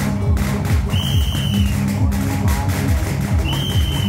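Electronic dance music with a fast, heavy bass beat. A high whistle-like tone sounds twice, once about a second in and again near the end, each for about half a second.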